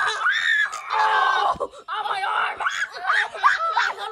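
Children screaming and yelling in play, a string of high-pitched cries with short breaks between them.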